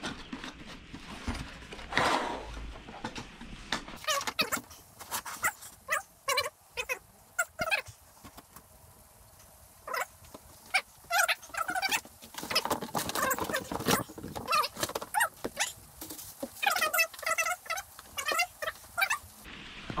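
Telescope tripod and kit being handled and unpacked: a string of clicks and knocks, with short warbling squeaks in between, clustered in the second half.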